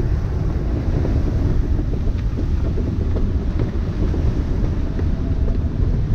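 Steady rush of wind on the microphone mixed with the sea rushing and breaking along the hull of a Hallberg-Rassy 54 sailing yacht beating hard upwind in 22 to 25 knots of wind.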